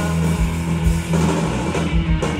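Live rock band playing an instrumental stretch: a drum kit and guitars over a sustained low note.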